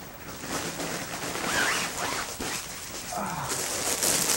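Rustling and sliding of the folded nylon fabric casing of a strip softbox as it is pulled out of its carry case and handled.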